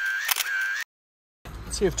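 Camera shutter sound effect: sharp shutter clicks over a steady whirring film advance, cut off abruptly just under a second in. About half a second of dead silence follows before a man starts speaking.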